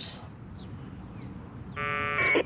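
Faint background, then near the end a short harsh buzz of 1200-baud packet-radio data tones from the Icom IC-705 transceiver's speaker: a packet from the node arriving in reply to the command.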